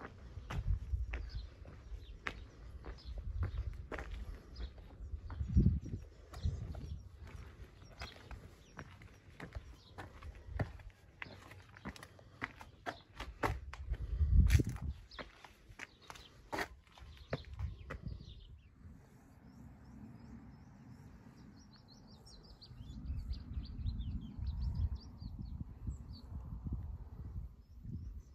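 Footsteps of a walker on a stone path, a run of short scuffs and clicks with two louder low thumps, stopping about two-thirds of the way in. After that the sound is quieter, and high bird chirps come near the end.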